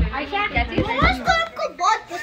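Speech: high-pitched voices talking continuously.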